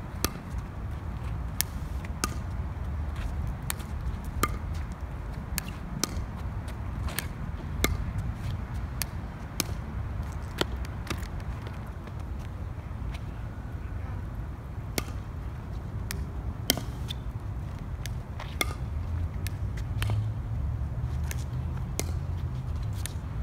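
A plastic pickleball being struck with plywood paddles and bouncing on an asphalt court: sharp, irregular knocks every second or two, over a steady low rumble of wind on the microphone.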